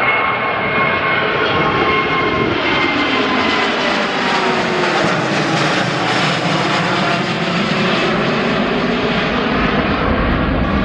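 Boeing 787 Dreamliner's twin turbofan engines at climb thrust just after takeoff, passing close overhead: a loud jet roar with whining tones that slowly fall in pitch, the hiss fullest around the middle as the airliner goes past and banks away.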